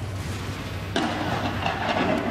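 Heavy downpour with road traffic: a steady wash of rain noise over a low hum, which jumps suddenly louder about a second in.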